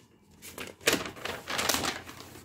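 A short run of rustling and clicking handling noise, starting about half a second in.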